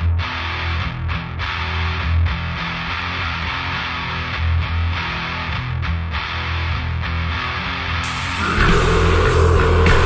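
Death-thrash metal intro: a distorted electric guitar riff on low chugging notes. About eight seconds in, cymbals and drums crash in and the full band plays louder.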